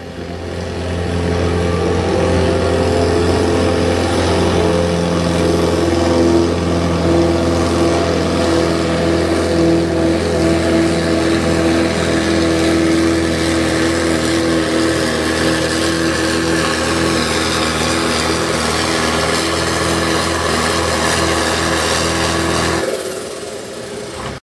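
A Landini 9880 tractor's diesel engine running hard at high revs under full load as it drags a tractor-pulling sled. The note builds over the first couple of seconds, holds steady, then falls away near the end as the pull finishes.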